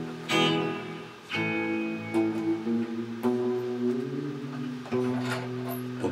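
Electric guitar picked slowly, about five notes or chords each struck and left to ring, with the pitch bending up and down on some of them in the middle.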